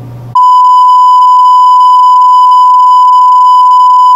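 Video test tone, the steady reference beep that goes with colour bars, cutting in suddenly about a third of a second in and held loud and unbroken at one pitch.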